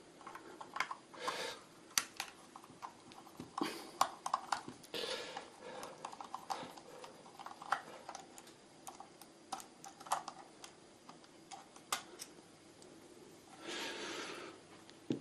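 Flat screwdriver prying and scraping at the snap-fit plastic cap of a sewing machine motor housing: irregular small clicks and scrapes of metal on plastic, with a longer rustle of handling near the end.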